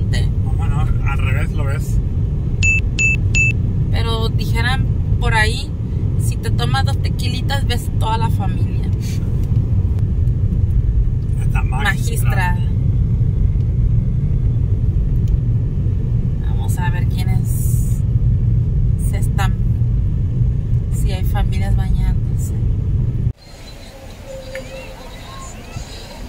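Steady low road-and-engine rumble inside a moving car's cabin, with three short electronic beeps about three seconds in. The rumble cuts off suddenly near the end.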